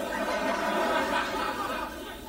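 Studio audience laughing: a dense, steady wash of many voices that eases off slightly near the end.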